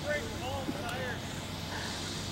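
Faint, distant voices over a steady background hum, with a car running far off on the snow course.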